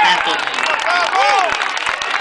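Spectators shouting and cheering, several voices at once, with scattered clapping.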